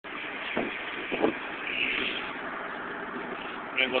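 Steady road and engine noise inside a moving vehicle's cabin, with a couple of brief faint sounds in the first second and a half; a man starts speaking at the very end.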